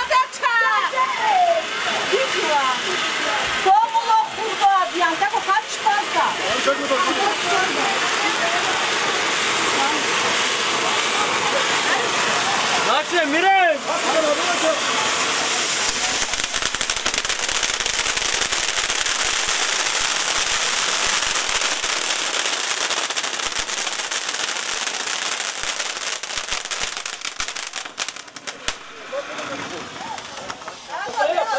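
Cone-shaped ground fountain fireworks hissing steadily as they spray sparks, with voices calling out over the first half. The hiss dies down near the end.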